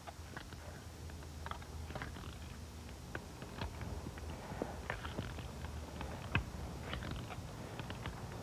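Garden fork digging sifted compost and organic fertilizer into soil: the tines crunch and scrape through the dirt in a run of short, irregular strokes.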